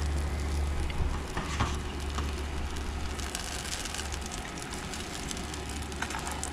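A consommé-dipped corn tortilla frying in hot oil in a skillet, sizzling steadily as more sauce is spooned on.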